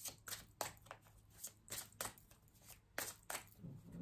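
A deck of oracle cards being shuffled by hand: quiet, irregular flicks and slaps of the cards, about three a second.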